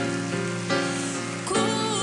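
A slow, tender ballad: a woman singing into a microphone over instrumental accompaniment, with a new sung phrase and its vibrato starting about one and a half seconds in.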